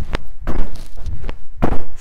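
Repeated thuds of trainers landing and pushing off on a thin exercise mat over a wooden floor during fast, continuous half squat jumps, with no pause between landing and take-off.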